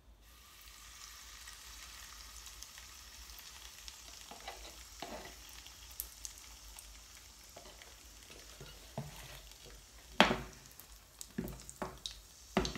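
Pancake batter sizzling in a hot oiled frying pan: a steady frying hiss that starts as the batter hits the pan. A few light clicks follow, then a loud clatter of cookware about ten seconds in.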